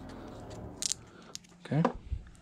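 Two light clicks as the brush cap of a small plastic bottle of fly-tying head cement is closed and the bottle is set down, followed near the end by a brief vocal sound.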